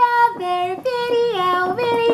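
A woman singing a short playful tune in a high voice, holding notes that step down and back up in pitch.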